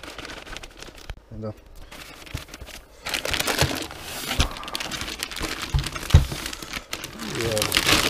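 Plastic bag wrapping crinkling and rustling as a wrapped oscilloscope is handled in its foam packing. A few dull knocks sound in the second half.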